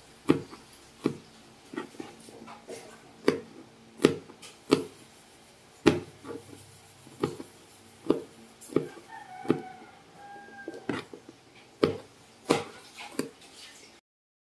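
Kitchen knife chopping garlic cloves on a plastic cutting board: irregular sharp knocks, one or two a second.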